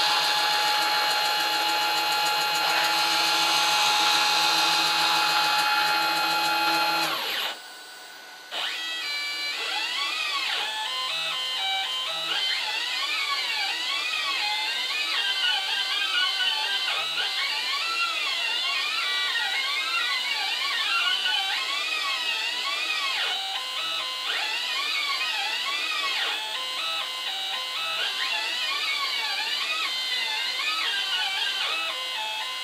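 Hobby CNC router's stepper motors playing a melody, starting about nine seconds in: pitched notes that glide up and down as the axes move back and forth. Before that the machine gives a steady high whine with hiss, which cuts off about seven seconds in, followed by a brief lull.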